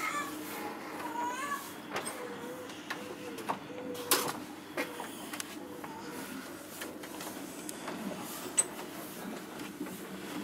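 Indistinct voices of people, including a high voice sliding up and down in pitch in the first second and a half, with scattered sharp clicks and knocks.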